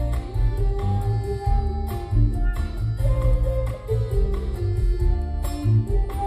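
Live band music: acoustic guitar, bass guitar and drums playing together, with pitched melody notes over a heavy bass line and regular drum hits.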